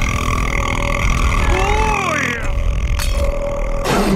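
A long, loud cartoon burp from a small alien character, running for a few seconds. Its pitch warbles and glides about halfway through.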